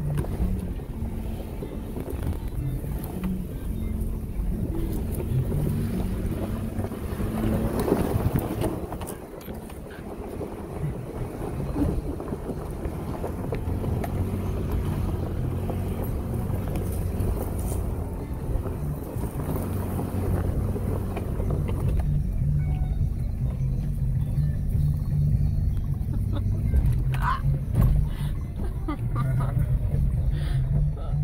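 Interior noise of a 4WD vehicle crawling up a rough dirt mountain track: a steady low engine and drivetrain rumble with scattered knocks and rattles from bumps. The hiss above it drops away about two-thirds of the way through, leaving mostly the low rumble.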